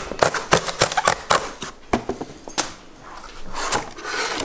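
Tear strip of a cardboard shipping box being pulled open: a quick run of sharp ripping and crackling for about two and a half seconds, then a softer rustle as the flap is lifted near the end.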